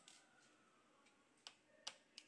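Faint sharp clicks of a small screwdriver working the screws of a laptop's plastic bottom cover: one at the start, then two close together near the end.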